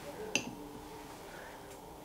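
A single light clink of a paintbrush against a glass water jar, about a third of a second in, as the brush is dipped to wet it. Otherwise faint room tone.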